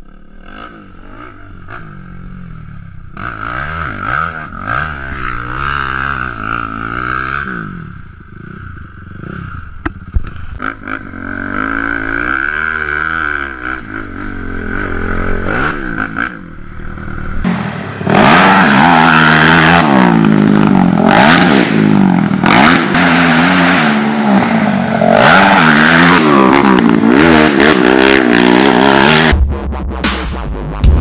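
Honda TRX450R quad's single-cylinder four-stroke engine revving up and down as it is ridden hard, the pitch climbing and dropping again and again through the gears. From a little past halfway it is much louder and closer, with the rush of riding noise over it.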